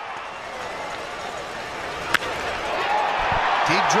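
Baseball bat striking a pitch: one sharp crack about two seconds in, over steady stadium crowd noise that swells in the following second as the ball is driven to center field.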